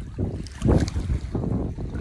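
Small wind-driven lake waves lapping and splashing on a leaf-strewn shore, in about three surges, with wind buffeting the microphone.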